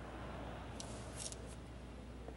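Faint, steady low background hum with a few short, crisp high clicks a little before and after the middle.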